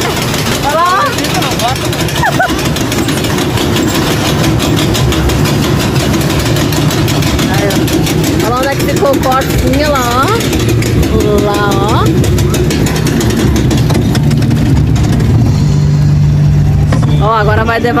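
Small roller coaster car running along its track: a steady rumble with a fast rattle from the track, growing louder near the end, and a few brief rider voices over it.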